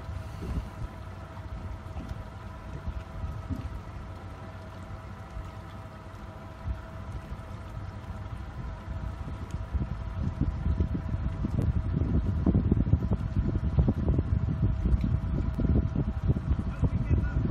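Wind buffeting the microphone, growing gustier in the second half, over a steady mechanical hum.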